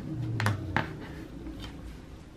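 Light clicks and taps of a rotary cutter and plastic ruler handled on a cutting mat while fabric is cut: a quick double click about half a second in and another shortly after, then quiet handling.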